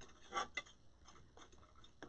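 A couple of faint short ticks from hands working the wreath materials, a little under half a second in; otherwise the room is nearly quiet.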